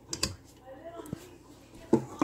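A few light clicks and taps of a utensil against a metal sieve as blended tomato pulp is pressed through it to hold back the seeds.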